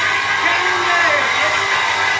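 Concert audience cheering and applauding at the end of a song: a dense, steady wash of noise with shouted voices in it.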